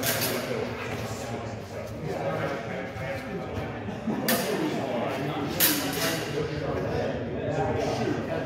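Swords clashing in sparring: three sharp, ringing strikes, one right at the start, one about four seconds in and one just before six seconds, over background talking.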